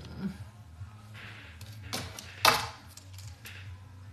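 Handling noises at a wooden table: a few soft rustles and light clicks, and one sharper knock about two and a half seconds in, over a steady low hum.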